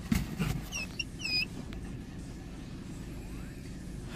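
Low steady rumble of a car creeping along a dirt road, heard from inside the cabin. About a second in, a dog in the car gives two or three short, high, squeaky whines of excitement.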